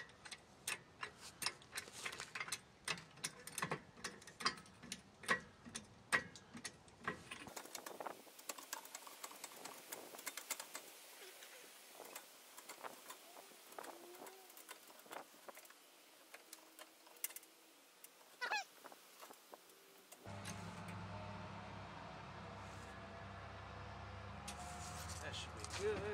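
Husky 3-ton floor jack being worked under a pickup: a quick run of sharp metal clicks and knocks, then fewer, fainter clicks. A steady low hum comes in about two-thirds of the way through.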